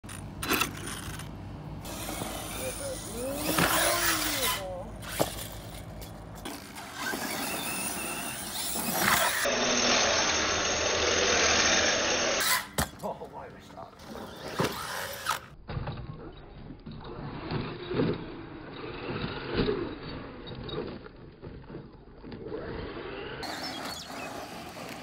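A string of cut-together clips of an electric RC buggy: its motor whining up and down in pitch, tyres on dirt and a few sharp knocks of landings, with the sound changing abruptly at each cut and voices in places.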